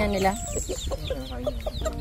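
A flock of chickens: hens clucking while chicks peep in many short, rising chirps.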